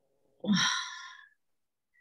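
A woman's hesitant, sighed "um, uh" about half a second in, trailing off within a second.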